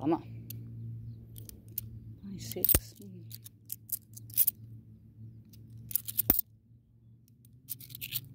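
Australian 50-cent coins clinking against each other as they are handled and sorted one by one: a scatter of small sharp metallic clicks, the loudest a little under three seconds in and again about six seconds in, over a low steady hum.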